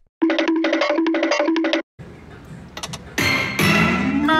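Destiny of Athena video slot machine sound effects: a short electronic jingle of repeated notes that stops abruptly, then louder reel-spin sounds with a tone climbing in steps near the end.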